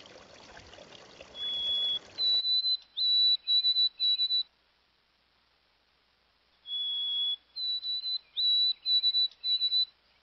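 Running creek water at first. Then clear, high whistled notes in two matching phrases: a long, slightly lower note followed by a run of four or five shorter, higher notes, with a short pause between the phrases.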